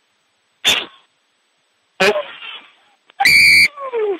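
Brief shouts from players or the crowd, cut off by dead silence between them. About three seconds in comes a loud half-second referee's whistle blast as the try is scored, followed by a falling shout.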